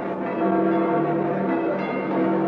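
Church bells ringing, several bells sounding together in overlapping peals.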